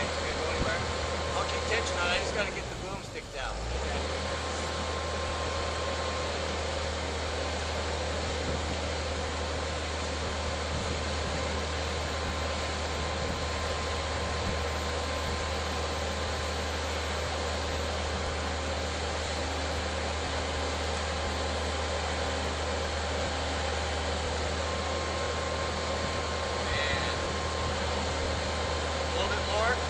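Engine of the lifting machine running steadily while it holds a concrete septic tank suspended on its hook.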